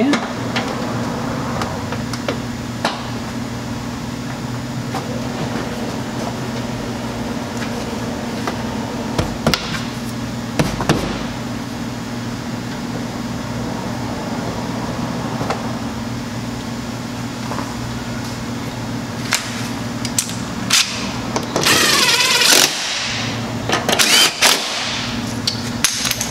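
Hand work on a truck's wheel-well fasteners, with scattered clicks and taps as push pins and 7 mm bolts are fitted, over a steady low hum. About four seconds before the end, a cordless power tool runs for about a second, running the hand-started bolts down.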